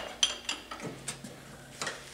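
A wrench hooked into a Quincy compressor intake valve held in a vise, pushed to break the valve's centre stud loose: a handful of light metal-on-metal clicks and taps.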